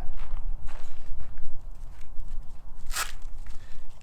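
Footsteps and light scuffing on a dirt surface, with one sharp scrape about three seconds in, over a steady low rumble.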